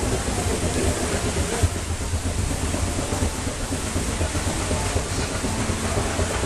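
Steady low rumble with a constant rushing, rain-like water noise from the ride boat's flume and machinery, with no clear single events.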